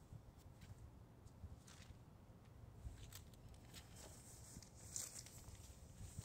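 Near silence: a faint low outdoor rumble with a few soft rustles of Bible pages being turned.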